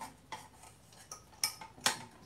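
Metal utensils and dishes clinking: about four sharp, ringing knocks, the loudest near the end.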